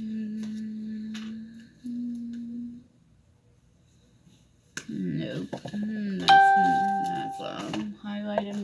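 A voice hums two steady low notes, then falls quiet. About six seconds in, a sharp ringing chime sounds over voice sounds; it is the loudest thing here and fades away over about a second.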